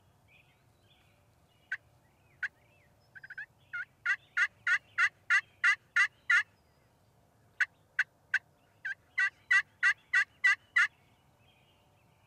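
Turkey yelping: a few scattered notes and a quick cluster, then two runs of sharp, evenly spaced yelps at about three a second, the first run of about nine notes growing louder, and after a short pause a second run of about ten.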